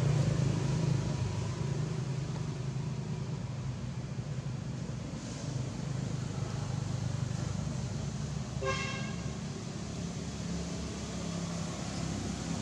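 Steady low motor hum over outdoor background noise, with one short horn-like toot about nine seconds in.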